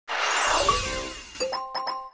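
Audio logo sting for a production company: a loud shimmering whoosh with gliding tones that fades, then three quick bright chime notes near the end, left ringing.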